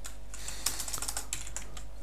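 Typing on a computer keyboard: a run of key clicks.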